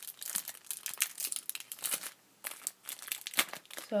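Wrapper of a football trading-card pack crinkling and tearing as it is worked open by hand: a stubborn packet, in a run of irregular crackles with a short lull a little after two seconds in.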